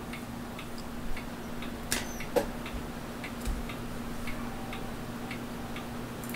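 Faint, fairly regular ticking, a few ticks a second, over a steady low hum; a slightly louder click comes about two seconds in.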